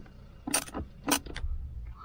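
Handling noise as a clamp meter and its test leads are set down and positioned on top of lithium batteries: a few sharp clicks and rattles, clustered between about half a second and a second and a half in, over a low background rumble.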